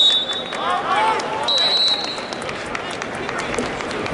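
Referee's whistle in a wrestling arena: one blast ending about half a second in, then a second, shorter blast about a second and a half in, over crowd murmur. The whistles stop the bout at the end of the first period.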